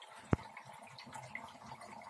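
Hotpoint Ariston LFT228A dishwasher running a wash cycle, with faint water sloshing and trickling inside and one sharp click about a third of a second in. The machine is working normally again after its waterlogged pressure switch was dried out.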